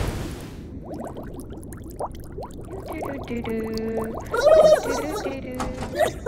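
Cartoon underwater bubble sound effects: a run of quick rising bloops, then a held musical tone. Near the end comes a short, louder voice-like sound that bends in pitch.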